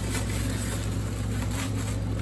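A steady low hum under light rustling and handling of white packing wrap being pulled out of a zippered makeup case.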